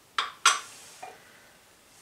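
Two sharp clinks about a quarter second apart, then a faint one about a second in: small glass spice dishes knocking against an enamelled pot and the stone counter as whole spices are tipped into the pot.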